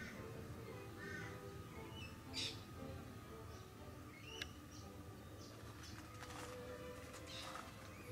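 Birds calling faintly in a quiet garden: a few short, scattered chirps and whistled notes.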